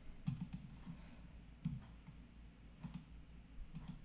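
Faint computer keyboard keystrokes and clicks, about half a dozen, spaced irregularly.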